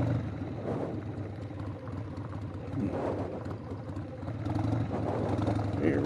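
1999 Harley-Davidson Sportster 1200's air-cooled V-twin engine running at low speed while the bike is ridden, its note growing louder about four and a half seconds in as it pulls away.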